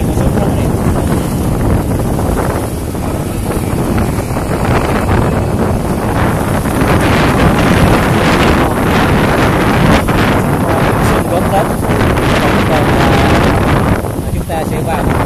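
Wind buffeting the microphone of a camera on the move, over the noise of street traffic and passing motorbikes, growing a little louder about halfway through.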